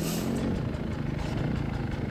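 Beta 250 RR two-stroke dirt bike engine running steadily at low revs on a trail ride. A short hiss comes right at the start.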